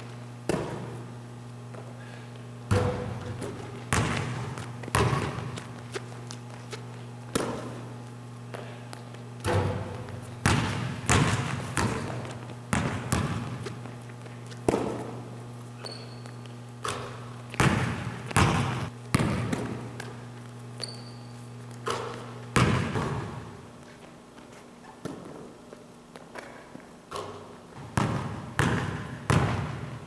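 A basketball bouncing on a hardwood gym floor during dribbling and shooting drills. Irregular sharp thuds ring on in the big hall, some coming in quick runs of two or three. A steady low hum runs underneath until about three quarters of the way through, then stops.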